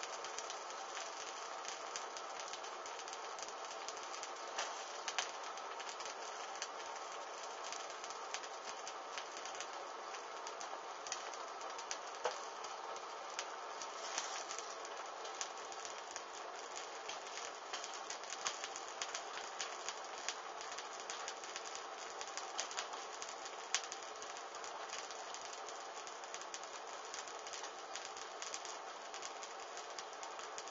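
Small flames burning along hanging dark strips: a steady low hiss dotted with many small crackles and a few sharper snaps.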